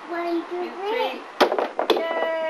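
Plastic toy bat striking a plastic ball on a toy batting tee: two sharp knocks about half a second apart, after some brief voice sounds.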